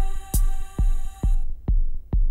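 Electronic techno from a modular synthesizer: a deep kick drum pulses slightly over twice a second under a layer of sustained high drone tones. The high tones cut off about one and a half seconds in, leaving the bare kick.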